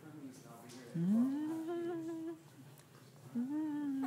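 A voice humming playfully in two long held notes, each sliding up at its start and then holding steady, with a quiet pause between them.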